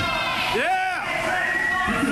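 Voices of a small crowd around a wrestling ring: one drawn-out shout that rises and falls in pitch about half a second in, and another held call near the end, over general chatter.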